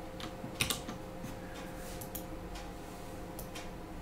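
Computer keyboard keys and mouse buttons clicking a few times, irregularly, over a faint steady hum.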